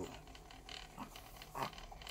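A house cat making short vocal sounds twice, a faint one about a second in and a louder falling one near the end, with faint small clicks.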